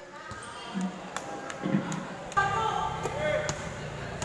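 A basketball bouncing on a hard court floor: a series of sharp, unevenly spaced bounces, with voices of players and onlookers on the court.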